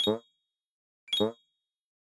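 Two short cartoon sound effects about a second apart, each a quick falling tone with a bright ding, marking two blinks of an eye.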